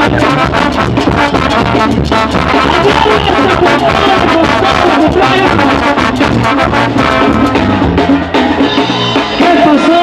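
Banda music: brass and drums playing with a steady beat.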